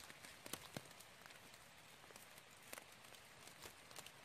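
Near silence, with a few faint, scattered clicks.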